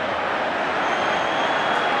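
Steady crowd noise from a football stadium, an even wash of many voices with no single shout standing out.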